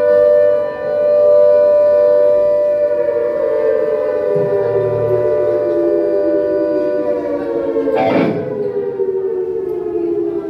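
A loud, sustained, siren-like droning tone with many overtones. It holds its pitch for the first few seconds, then slides slowly downward, and a short noisy burst cuts across it about eight seconds in.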